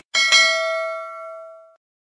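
Notification-bell sound effect: a bright ding, sounded twice in quick succession, ringing out and fading away over about a second and a half.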